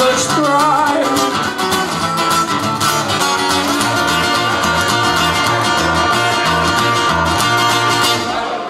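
Live band music led by guitar, with a steady beat and no sung words.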